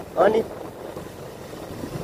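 Motorcycle riding along a road: steady wind rush on the microphone over the bike's running and road noise. A short spoken exclamation comes just after the start.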